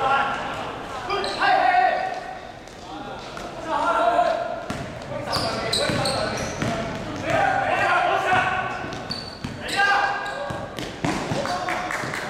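Voices of players and spectators calling out during a basketball game in a large gym hall, mixed with a basketball bouncing on the court floor.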